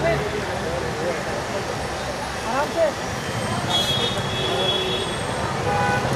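Indistinct chatter of a crowd of people over a steady background rumble of road traffic.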